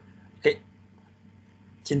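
A single brief vocal sound from a person about half a second in, short and abrupt like a hiccup, over a faint steady hum. A person starts talking near the end.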